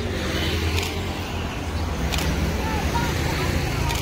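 Steady low rumble of motor vehicle engines on the road, with faint voices in the second half.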